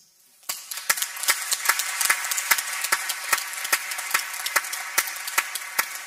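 Audience applauding: a dense patter of claps that starts about half a second in and dies away at the end.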